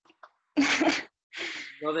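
A person's short, breathy vocal burst about half a second in, then a breathy hiss, before speech resumes near the end.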